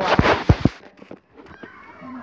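Handling noise from a handheld phone being carried: a few sharp knocks and thumps against the microphone in the first second, then a faint rustle.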